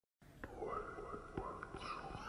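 A faint whispered voice with a few soft clicks.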